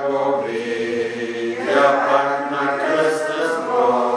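Sacred chant sung a cappella, a slow unbroken phrase of long held notes that change pitch about once a second.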